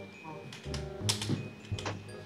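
Computer keyboard being typed on, a few sharp key clicks, the two loudest about a second in and near the end, over quiet background music.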